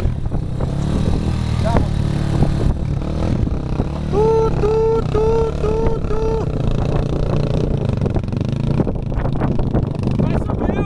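Dirt bike engines running and revving unevenly as the bikes are worked up a steep dirt climb. About four seconds in, a voice shouts five times in quick, even succession over the engines.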